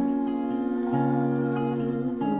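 Acoustic guitar playing slow, ringing chords; a new chord with a lower bass note sounds about a second in.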